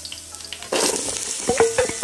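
Sliced onion hitting hot oil in an electric pot, where ginger is already frying: a steady sizzle that jumps sharply louder about two-thirds of a second in as the onion lands. Near the end come several ringing metal clinks as the steel bowl knocks against the pot.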